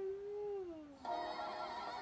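A young woman's singing voice holds a note, then slides down in pitch like a sung yawn. About a second in, a fuller, brighter sound takes over.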